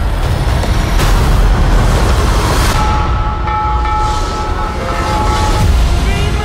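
Trailer sound mix: a loud, dense rumble of battle and explosion noise with a heavy low end. Several held steady tones join in about three seconds in.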